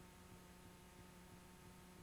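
Near silence: a faint, steady electrical hum over soft hiss, from a stretch of videotape that carries only noise.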